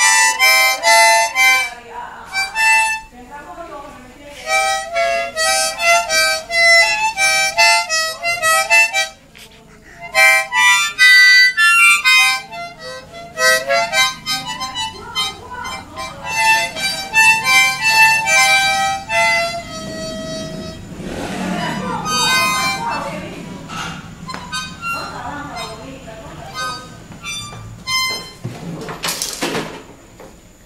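A small child playing a harmonica, blowing and drawing in short, uneven bursts of reedy chords with no tune, breaking off briefly about nine seconds in and growing softer and sparser in the last third.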